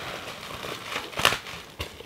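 Plastic bubble wrap crinkling and rustling as hands unwrap a small package, with a few sharper crackles a little over a second in.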